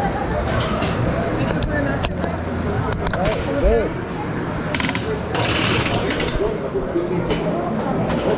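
Voices in the coaster's loading station, with several sharp clicks and knocks from the train's lap bars and comfort collars being latched and checked: a few about two and three seconds in and a quick run of them just before the middle. A brief hiss follows.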